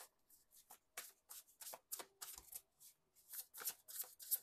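A deck of oracle cards being shuffled by hand: a faint run of quick, irregular card flicks and riffles, pausing briefly near the end.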